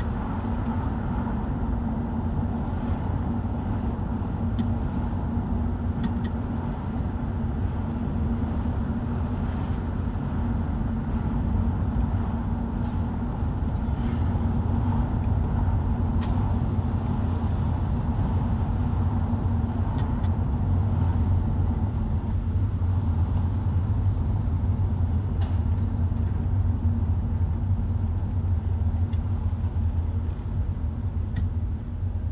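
Steady car road noise heard from inside the moving car: low engine and tyre rumble with a constant droning hum, growing slightly louder partway through as the car picks up speed.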